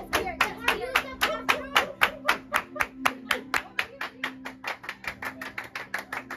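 Hands clapping in a fast, even rhythm, about five claps a second, over a faint steady background tone.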